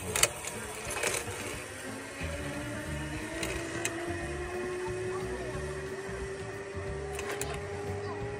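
Zip wire trolley running along the steel cable, a steady whine that rises slightly in pitch and then holds.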